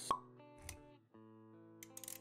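Animated-intro sound effects over background music: a sharp pop just after the start, a soft low thump a little later, a brief break in the music about halfway, then a run of quick clicks near the end.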